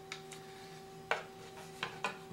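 Kydex holsters handled in the hands: light rubbing and a few small plastic clicks, with one sharper knock about a second in, over a steady faint hum.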